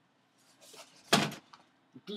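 A single loud thump about a second in, with faint rustling just before it.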